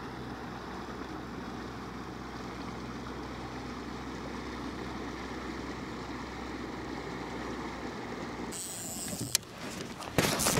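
A passing motorboat's engine drones steadily in the distance over light wind and water noise. Near the end the drone gives way to a short spell of handling noise with one sharp click.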